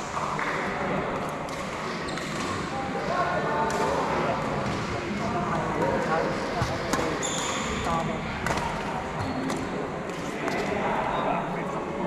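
Chatter of many voices in a sports hall, with scattered sharp knocks and the pock of badminton rackets hitting a shuttlecock during wheelchair badminton play.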